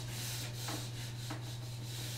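Whiteboard eraser wiping marker ink off a whiteboard in repeated back-and-forth strokes, a soft scrubbing hiss that rises and falls with each stroke.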